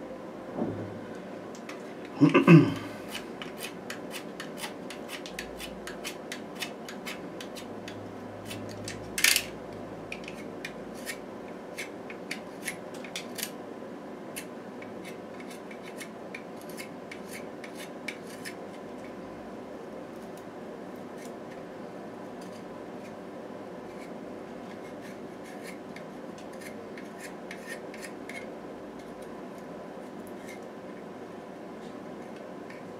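Short scratchy clicks and strokes of a pastel pencil, coming quickly for the first dozen seconds and then thinning out. There is a louder knock about two and a half seconds in and a sharp click near nine seconds, over a steady low hum.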